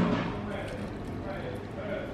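Foamy amaretto sour trickling from a steel cocktail shaker tin through a strainer into a glass, under low voices. There is a brief louder sound at the very start.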